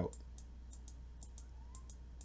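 Faint computer mouse clicks, repeated a few times a second, as the cursor steps through frames with the 'Next' button, over a steady low electrical hum.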